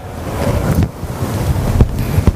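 Low rumbling wind noise on the microphone, an even rush of air without any clear tone.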